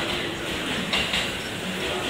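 Railway station platform noise: train sounds mixed with passengers' footsteps and movement, with a few short sharper sounds about halfway through.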